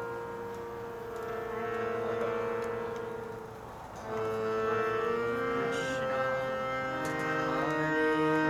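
Harmonium playing sustained reed chords, the held tones fading briefly and a fuller new chord coming in about four seconds in.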